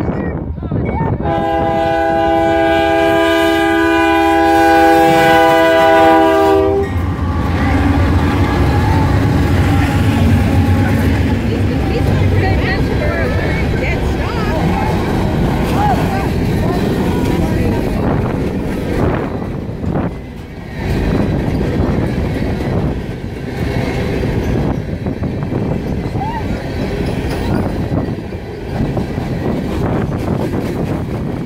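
Diesel freight locomotive's multi-note air horn sounding one long blast of several steady notes together, starting about a second in and cutting off about seven seconds in. The locomotives then pass with a low engine rumble, followed by the steady rolling noise of a long string of hopper cars on the rails.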